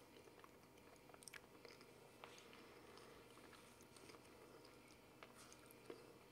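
Faint sounds of a person chewing a mouthful of banana, with a few soft mouth clicks spread through, over low room tone.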